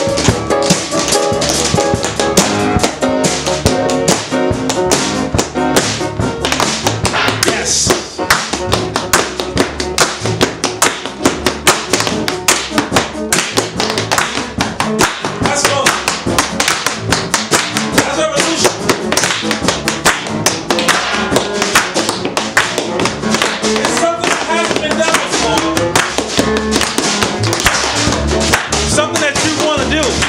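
Live band playing piano, upright bass and drums together, with rapid sharp taps running all through.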